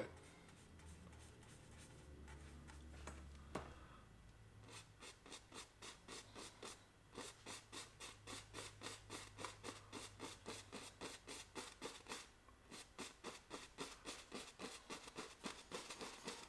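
Paintbrush bristles scratching on a canvas in quick, short, repeated strokes, about four to five a second, faint. The strokes start about four seconds in and pause briefly twice.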